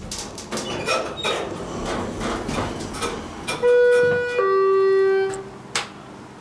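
Schindler elevator car stopping at a floor, with rumble and light clicks, then its electronic arrival chime about three and a half seconds in: two steady notes, a higher one and then a lower one, followed by a sharp click as the doors begin to open.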